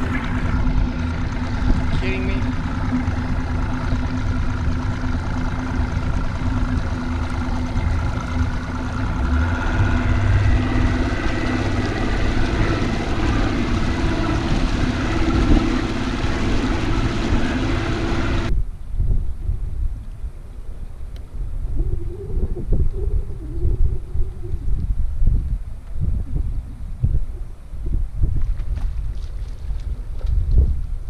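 Bass boat's outboard motor running under way, a steady drone with wind and water noise. About two-thirds of the way through it cuts off suddenly, leaving low wind buffeting on the microphone and scattered knocks.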